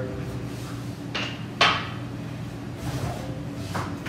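A few short knocks and clunks of kitchen handling, ending with a refrigerator door being pulled open.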